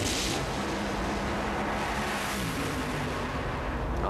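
Two supercharged nitromethane Funny Car engines at full throttle as the cars launch from the starting line and accelerate down the drag strip. The sound is loud and steady, with a sharp burst of hiss right at the launch.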